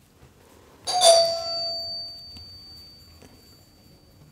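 A two-note ding-dong doorbell chime about a second in, the second note slightly lower, its ring fading away over the next two seconds.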